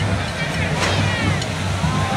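Correfoc pyrotechnics: a large fire fountain of sparks hissing and crackling in a steady rush, with crowd voices shouting over it and a sharp pop a little under a second in.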